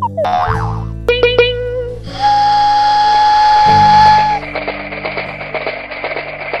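Cartoon soundtrack music with comic sound effects. A quick falling glide comes right at the start, then a few springy boing notes about a second in. A held whistle-like tone runs for about two seconds, followed by a fast rattling rhythm.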